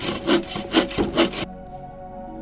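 Hand saw cutting wood: a quick run of back-and-forth strokes that stops abruptly about a second and a half in.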